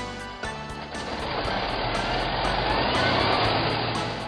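Truck engine sound effect, a noisy rumble that swells in loudness over about three seconds with a faint rising whine, over background music.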